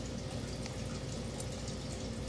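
Steady background hiss with a faint steady hum underneath; no distinct event stands out.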